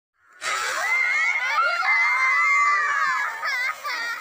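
A crowd of children screaming together in high, drawn-out shrieks that start suddenly and tail off into scattered shorter cries near the end.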